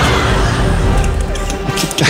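Live keyboard music played as accompaniment, a dense, noisy texture without a clear melody, with a few sharp clicks near the end.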